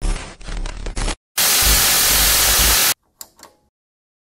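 Glitch-intro sound effects: a choppy burst with a low thump for about a second, then after a short gap a loud burst of TV-static hiss over a deep bass rumble that cuts off suddenly, followed by a few faint crackles.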